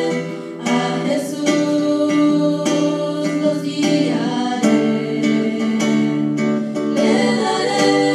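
A small girls' vocal group singing a Christian song in long held notes, accompanied by acoustic guitar chords.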